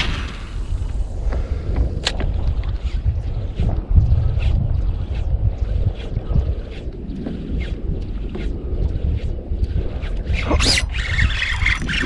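Wind rumbling on the microphone over open water, with scattered light clicks and small water sounds while a fish is reeled in on a spinning rod from a kayak. A short, sharp burst stands out near the end.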